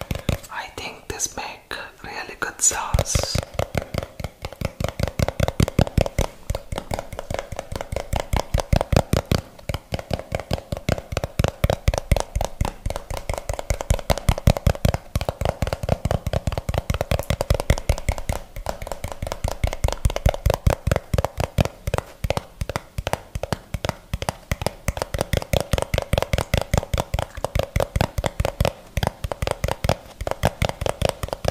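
Fast, continuous fingertip tapping on a plastic jar and its red plastic screw lid, the strokes following each other in a rapid, even stream. Between about one and three seconds in there are a few sharper, brighter clicks.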